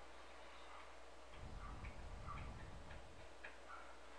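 Faint room noise with a few soft, irregular ticks.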